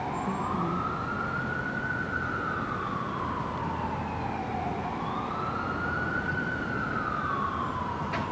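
Emergency vehicle siren in a slow wail, its pitch rising and falling about every four seconds, over a steady low rumble.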